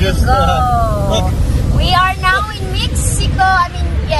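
Road and engine noise inside a car cabin at highway speed: a steady low rumble. Voices talk over it in short bursts.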